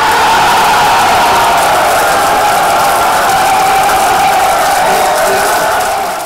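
A large crowd cheering loudly and steadily, celebrating an election result.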